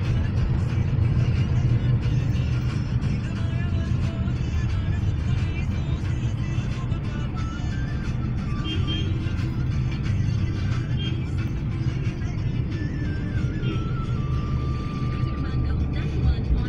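Music with a stepping melody and a held note near the end, playing over the steady low rumble of a car driving, heard from inside the cabin.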